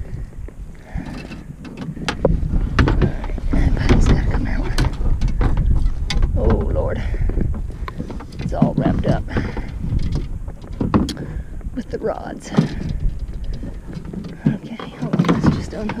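Fishing rods and gear being set into a plastic kayak: repeated knocks and clatter against the hull and rod holders, over a low rumble.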